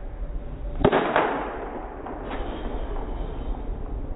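Baseball bat striking a pitched ball with a sharp crack about a second in, followed a moment later by a second, slightly softer impact and a brief ring.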